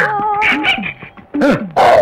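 A man's wordless whimpering, yelping cries: a short series of pitched cries that waver and arch up and down, the loudest near the end.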